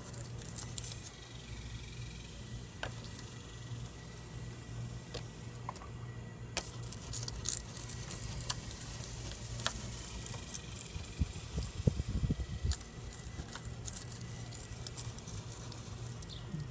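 Razor-blade scraper rasping in short, scratchy strokes across vinegar-wetted window glass, scraping off baked-on calcium film, over a steady low hum. A few low thumps come about two-thirds of the way through.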